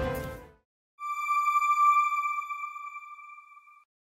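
Background music fades out in the first half second. About a second in, a single electronic ping-like tone with bright overtones sounds, swells and then fades away over nearly three seconds: a broadcaster's sound logo for its closing end card.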